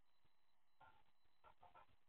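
Near silence: room tone, with faint, indistinct brief sounds in the second half.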